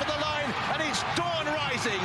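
Speech: a male race commentator calling the finish of a flat race, fast and high-pitched in his excitement.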